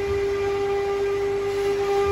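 Steady, unbroken machine whine: one held tone with overtones, from a machine running in the woodworking shop.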